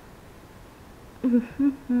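Quiet room tone for about a second, then a woman's voice in three short, hummed syllables, the last one held.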